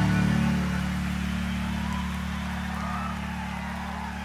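A live rock band's held low chord ringing on and slowly fading away, with a few faint high notes above it.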